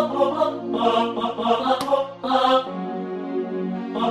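MIDI-rendered backing track on General MIDI sounds: synthesized choir voices repeating short 'pa' syllables over a pad, with a single click a little under two seconds in. A bit under three seconds in, the short repeated notes stop and a softer held chord carries on.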